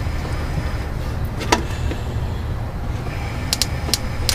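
Sparks snapping across the gap of an inline spark tester, fired from a stock Ford TFI ignition coil as a spare distributor is turned by hand: one sharp snap about a third of the way in, then a quick run of three near the end, over a steady low hum. The spark is weak, from a coil described as "not a really good coil" and grounded through a poor ground.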